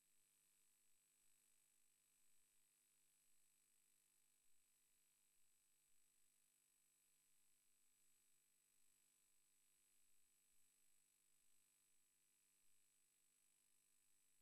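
Near silence: only a faint, steady background hiss with no events.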